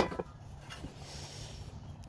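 Handling noise from a lawn mower's metal recoil starter housing being flipped over: one sharp knock at the start, then faint rubbing and a few small clicks.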